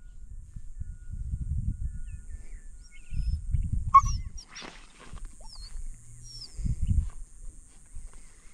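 Low rumbling noise on the microphone in three stretches, with one sharp click about four seconds in, typical of a dog-training clicker marking the puppy's behaviour. Faint bird chirps sound in the background.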